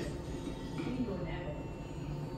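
Television soundtrack playing in the room: a steady low rumble with faint voices over it.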